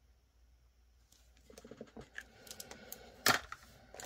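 A felt-tip marker coloring in a square on a paper savings-challenge card, and the card and marker being handled. Light scratches and ticks grow busier from about halfway, with one sharp click about three seconds in.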